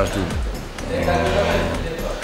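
A man speaking, with a long drawn-out vowel about halfway through, over faint background music.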